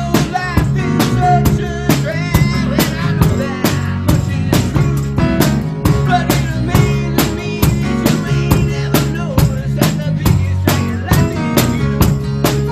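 Rock band playing live: strummed acoustic guitars and bass guitar over a steady drum-kit beat.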